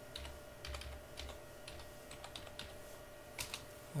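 Computer keyboard being typed on: a scattered run of faint, irregular key clicks, as a password is entered at a sign-in screen.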